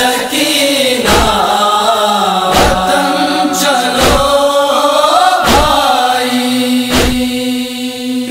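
Voices chanting a slow noha lament refrain over a steady held drone, punctuated by five evenly spaced thumps about one every second and a half, the beat of chest-beating matam.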